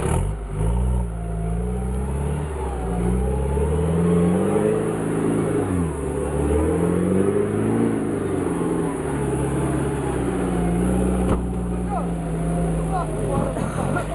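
Engine of a 4x4 SUV revving as it pulls away and drives off up a muddy dirt track, its pitch rising and falling several times as the throttle is worked, then holding steadier near the end.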